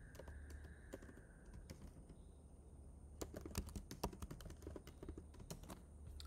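Faint computer keyboard typing: scattered key clicks, coming more thickly in the second half.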